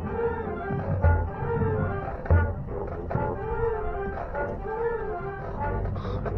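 High school marching band playing live on the field, heard from the stands: a melody that rises and falls in pitch over a few low drum hits.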